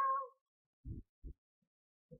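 A child's drawn-out, sung-sounding vowel trailing off at the very start, then two soft, dull thumps about a second in.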